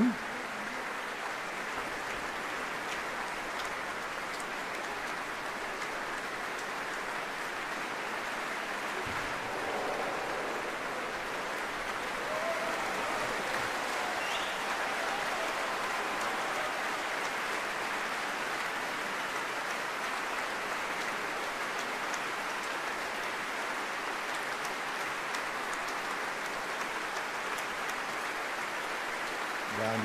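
Concert-hall audience applauding steadily. About a third of the way through, a brief collective 'ooh' rises from the crowd over the clapping.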